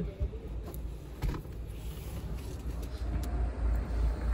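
Low, steady rumble inside a car's cabin, with a few faint clicks and rustles.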